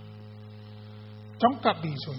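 Steady low electrical mains hum from the microphone and sound system, alone for about a second and a half before a man's voice resumes.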